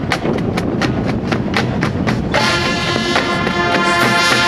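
High school marching band percussion playing a crisp clicking beat about four times a second over bass drum. About two seconds in, the brass section comes in with a loud sustained chord.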